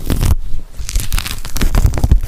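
Dubbed-in ASMR tearing and crinkling sound standing for shed skin being peeled off a leopard gecko: a dense, loud run of fine crackles.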